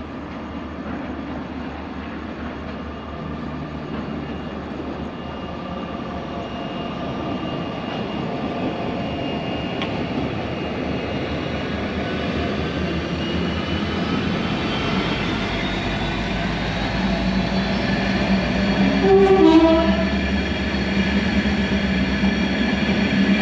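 Diesel locomotive hauling a train of ore wagons, running steadily and growing louder as it approaches, with a short horn blast about nineteen seconds in.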